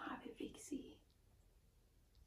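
A person whispering a few quiet words in the first second, then only faint room noise.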